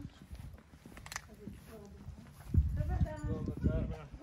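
Indistinct talking that grows louder about two and a half seconds in, with scattered knocks in the quieter first part.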